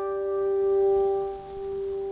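Takamine acoustic guitar with a plucked note ringing on, its level rising and dipping as it sustains.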